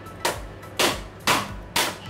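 A crab's hard claw shell being cracked by blows from a heavy blunt tool on a plastic cutting board: four sharp strikes about half a second apart, the last three loudest.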